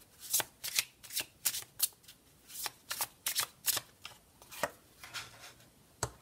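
A deck of Sibilla oracle cards being shuffled by hand: a quick, irregular run of about fifteen crisp card flicks over five seconds.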